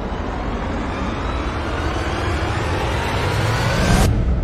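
A rising whoosh sound effect: a noisy sweep over a low rumble that grows steadily louder and climbs in pitch, peaking at the end, where its hiss cuts off abruptly.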